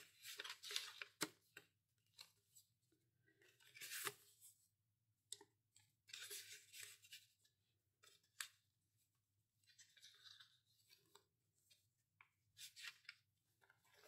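Faint, intermittent rustling and soft taps of paper as the pages and tags of a handmade junk journal are turned and handled.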